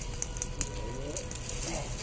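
Dry twigs and leaf litter burning in a brush fire, with a handful of sharp crackles and pops over a low rumble.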